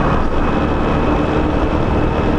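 Honda Biz's small single-cylinder four-stroke engine running steadily while riding at road speed, mixed with a constant rush of wind and road noise.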